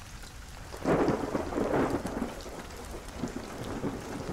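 Recorded rain falling steadily, with a roll of thunder that swells about a second in and slowly fades.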